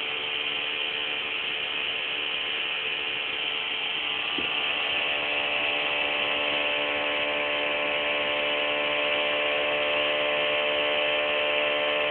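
Home-built Bedini SSG pulse motor running steadily while it charges a cellphone battery: its spinning magnet rotor and pulsing coil give a steady whirring hum of several held tones, growing a little louder from about four seconds in.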